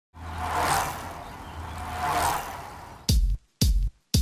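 Two swelling whooshes over a low steady hum, then intro music cuts in about three seconds in with short, punchy hits whose bass notes drop in pitch, separated by brief silent gaps.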